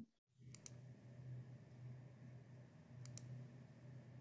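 Near silence with a faint low hum, broken by two short double clicks of a computer mouse button, one about half a second in and one about three seconds in.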